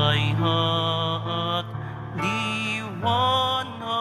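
A Tagalog communion hymn: a singing voice with vibrato carrying slow, held phrases over sustained accompaniment chords, with a short break between phrases midway.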